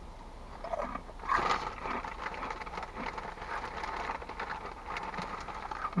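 Close-up chewing of crunchy Cheetos Cheddar Jalapeño corn snacks: a dense run of crackling crunches that starts about a second in.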